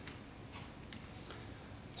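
Quiet room tone in a pause in speech, with a few faint, short clicks about a second apart.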